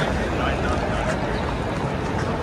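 Wind buffeting a walking camera's microphone, a steady low rumble, over city street noise with passing traffic.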